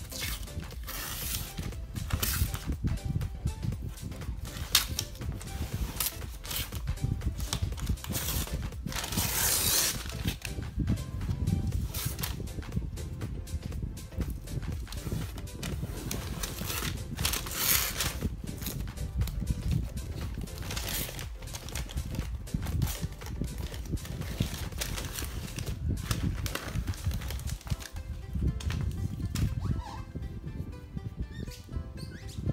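Background music, with the rustling of brown protective paper being peeled off an acrylic sheet, which comes up in several louder stretches.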